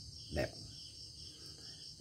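A faint, steady high-pitched drone in the background, with one spoken word about half a second in.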